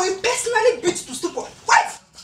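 Short, loud shouted cries and yelps from women scuffling, coming in quick bursts with a sharp one near the end.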